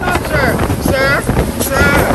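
Powerboat running fast across open water, with wind buffeting the microphone and spray rushing past the hull.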